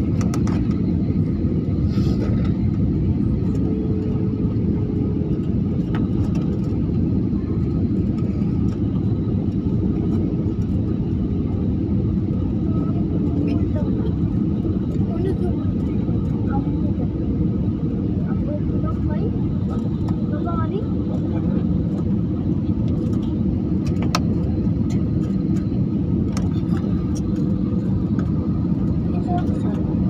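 Steady jet airliner cabin noise heard from a window seat: the engines and the airflow over the fuselage making an even, deep rumble as the plane descends.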